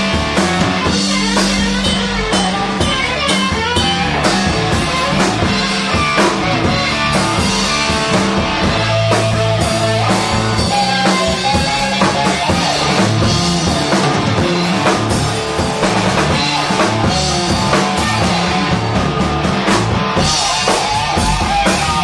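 Live blues band playing: an electric guitar over electric bass and a drum kit, keeping a steady beat.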